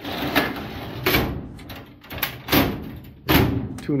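Drawers of an old steel file cabinet sliding on their metal runners, one pushed shut and another pulled open, with a loud rumble and several sharp metal clunks and knocks.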